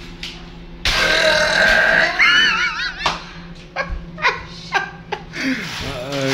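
A person's long, loud burp starting about a second in and lasting about two seconds, rough at first, then with a wavering pitch near its end.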